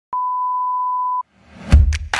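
A steady electronic beep at a single pitch, about one second long, cuts off sharply. After a brief silence an electronic music track swells in and its beat starts with a heavy bass drum hit near the end.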